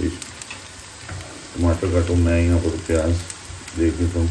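Chopped onions sizzling in oil in a non-stick frying pan, stirred with a silicone spatula. A louder pitched, voice-like sound comes in over the frying from about a second and a half in and again near the end.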